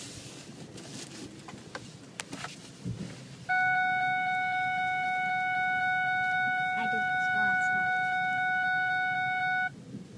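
A loud, steady, single-pitched tone starts abruptly about three and a half seconds in and holds for about six seconds before cutting off suddenly, over low vehicle cabin noise.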